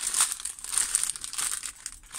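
Small plastic bags of diamond-painting drills crinkling as they are handled, a dense run of crackles that thins out near the end.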